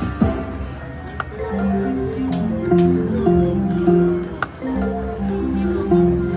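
Quick Hit Super Wheel slot machine playing its electronic reel-spin tune: a run of short held notes stepping up and down in pitch, with a few sharp clicks in between.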